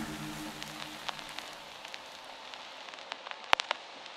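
A steady soft hiss dotted with scattered crackling clicks, a background noise bed that carries on under the narration; the held tones of the intro music die away at the start, and a few sharper clicks come near the end.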